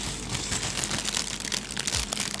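Clear plastic bag of LEGO pieces crinkling as it is handled, a dense run of small crackles.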